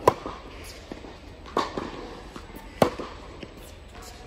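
Tennis ball struck by rackets in a rally on an indoor court: three sharp pops, the loudest right at the start, another about a second and a half in and a hard one near three seconds, with fainter knocks of the ball bouncing between them.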